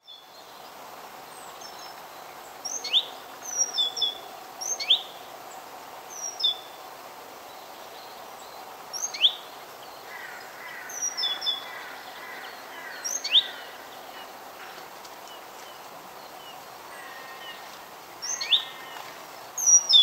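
Wild birds calling in woodland: sharp, short chirps every few seconds, with a softer trill in between, over a steady background hiss.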